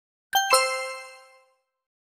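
A two-note chime sound effect: a higher note struck, then a lower one a moment later, both ringing out and fading over about a second.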